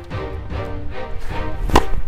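A tennis racket strikes a tennis ball once, a single sharp hit near the end, over background music.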